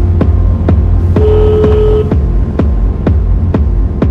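Peak-time techno track playing: a steady four-on-the-floor kick drum at about 126 beats a minute over a heavy bass line, with a short held synth note about a second in.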